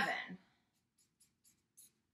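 Felt-tip marker drawing on chart paper: a series of short, faint scratchy strokes as a box and tally marks are drawn.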